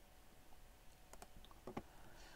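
Near silence with a few faint clicks from computer mouse and keyboard use, two of them close together near the end.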